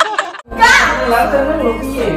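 A brief cut-out about half a second in, then a loud voice over background music.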